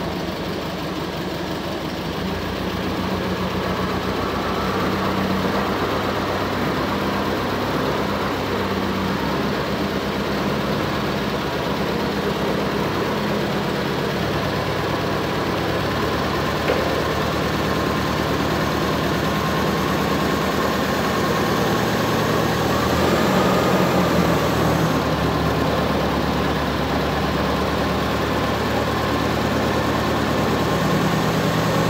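Forklift engine running at a steady idle, with a faint whine that rises and falls briefly about 23 seconds in.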